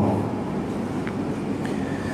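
A steady, even rushing background noise with no voice in it.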